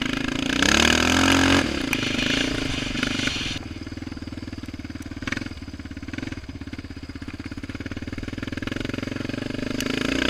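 Yamaha Raptor 700R quad's single-cylinder four-stroke engine revving hard through a mud hole, with water and mud spraying in the first couple of seconds. It then drops to a steady, evenly pulsing low-throttle beat for several seconds, and picks up again near the end.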